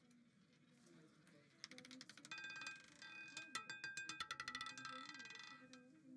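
A roulette ball clattering over the metal pocket separators of a spinning roulette wheel: a fast run of faint metallic clicks with a light ringing, starting about two seconds in and stopping near the end as the ball settles in a pocket.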